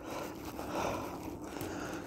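Nylon webbing and rucksack canvas rustling and scraping as a webbing loop is worked into a slit in a plastic quick-release buckle with needle-nose pliers: a steady, scratchy rustle.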